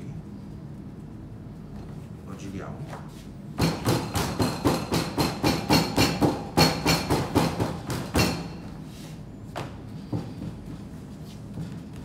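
A quick run of thumps, about four a second for some four seconds, from a fist pressing and crimping the edge of a filled calzone against a stainless-steel worktable, followed by a couple of single knocks.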